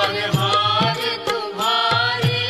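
Hindu devotional song: a singing voice over a steady hand-drum beat.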